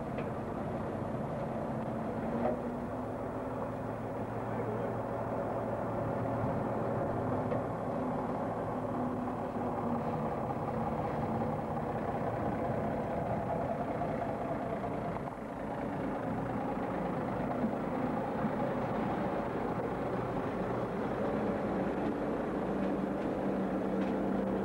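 The diesel engine of a DAF 2800 truck running steadily at low revs as it tows a heavy low-loader through a slow turn.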